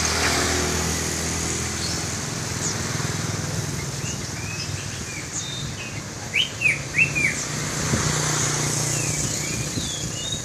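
Songbirds chirping in short scattered notes, with a run of four loud downward-sliding notes a little past the middle. Under them runs a steady low hum of traffic engines.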